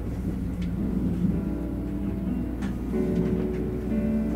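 Kintetsu Shimakaze limited express train running, heard from inside at the front of the train: a steady low rumble with a few faint clicks. Steady held tones come in about three seconds in.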